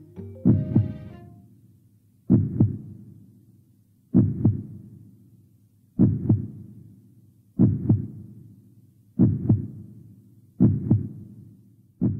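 Heartbeat sound effect: seven double lub-dub thumps, the beats coming gradually closer together.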